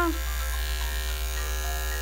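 Andis five-speed electric dog clipper fitted with a #10 blade, running steadily with an even hum as it trims fur from a dog's paw pads.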